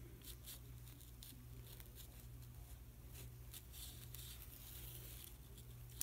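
Faint rustling and light ticks of hands handling burlap, lace and a small paper-clip hanger while hand-sewing, over a steady low hum.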